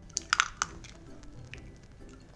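Chicken eggshell cracking as it is pulled apart by hand over a ceramic plate: a few sharp crackly clicks in the first half second, then quiet.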